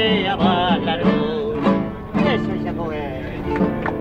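A live song: a voice singing over instrumental accompaniment, at a steady full level.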